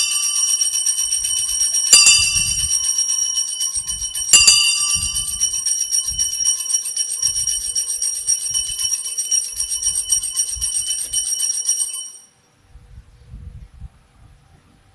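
Altar bells, a cluster of small sanctus bells, shaken at the elevation of the consecrated host. There are loud shakes at the start and again about two and four seconds in, with continuous rapid jingling between them. The ringing cuts off about twelve seconds in.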